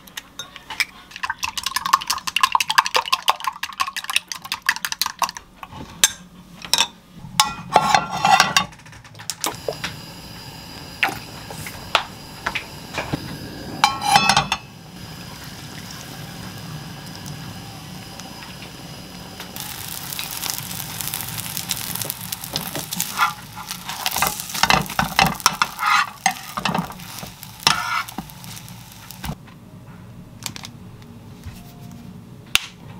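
Wooden chopsticks rapidly whisking beaten eggs in a glass measuring cup, a quick run of clicks against the glass. After a clatter of the pan near the middle, a steady hiss sets in. It turns to beaten egg sizzling in a hot frying pan, with chopsticks tapping and stirring it in the last third.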